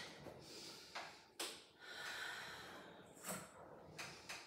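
Faint breathing through the nose: two short, sharp exhales, then a longer, softer breath, then another short one near the end, from a person working through reformer footwork.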